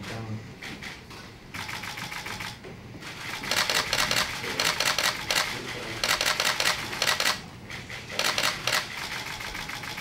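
Many press camera shutters firing in rapid bursts, in waves that build up as the signed documents are held up, heaviest from about three and a half to seven seconds in.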